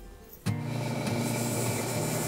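Bench grinding wheel running and grinding small steel pieces, a steady loud grinding noise that starts suddenly about half a second in, with background music underneath.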